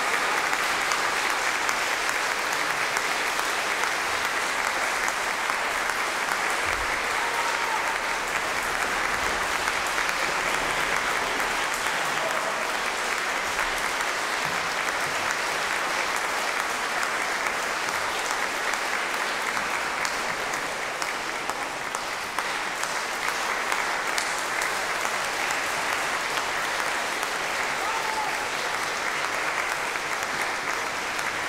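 Concert-hall audience applauding steadily: sustained, dense clapping with no music.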